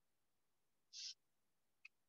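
Near silence between a teacher's spoken sentences, with one short faint hiss about a second in.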